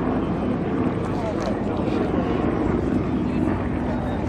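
A Yak-52's nine-cylinder M-14P radial engine and propeller running steadily during an aerobatic manoeuvre.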